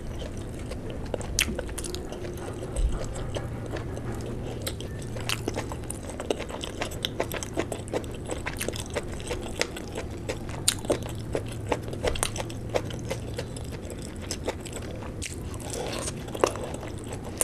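Close-miked eating of luchi (puffed fried bread) with curry: fingers handling the bread and scooping the gravy, then chewing with many small mouth clicks and smacks from about halfway through.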